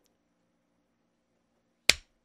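A single sharp, loud hand clap near the end.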